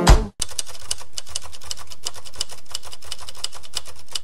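Typewriter sound effect: rapid, evenly spaced key strikes clacking at a steady level, starting about half a second in, as the on-screen title is typed out.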